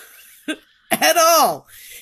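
A woman's wordless vocal sounds between sentences: a breath, a brief catch, then a loud voiced sound about a second in that falls in pitch, cough-like, followed by a breath out.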